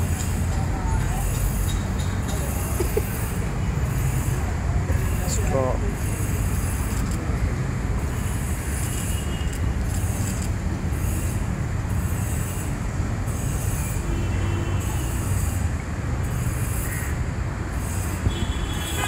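Steady street traffic noise, with faint snatches of people's voices now and then.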